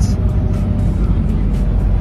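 Camper van driving slowly, its engine and road rumble heard as a loud, steady low drone from inside the cab, with faint music underneath.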